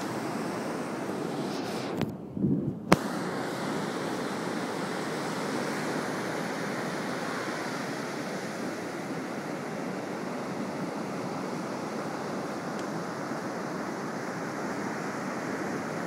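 Steady wash of ocean surf and wind on a beach. About two seconds in, the sound briefly drops out and returns with a sharp click.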